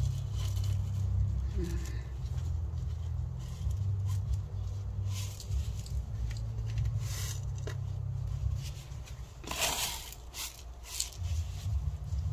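Gloved hands working gritty potting soil and fine decomposed-granite grit into a clay planter: intermittent short scrapes and crackles, the loudest near the end, over a steady low rumble.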